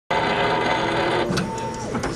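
Laboratory machine running with a steady whir and several held tones. About a third of the way through it drops away suddenly, leaving a fainter hum with a brief single tone.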